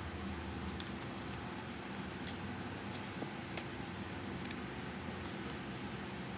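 Light, sharp clicks and ticks from handling a boxed necklace and its packaging, a few scattered over the seconds, over a steady low hum.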